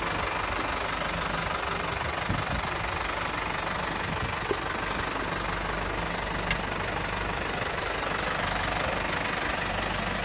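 An engine running steadily, with two short clicks about four and a half and six and a half seconds in.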